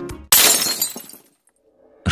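A sudden crash-like transition sound effect about a third of a second in, bright and crackling, dying away over about a second.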